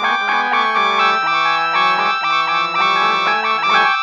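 Trumpet and piano music: the trumpet plays a run of held, changing notes over the piano.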